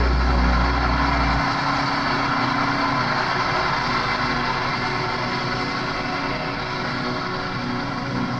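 An electric bass guitar's low held note rings and stops about a second and a half in. A dense, steady wash of band sound with held tones goes on behind it, slowly fading at the end of the song.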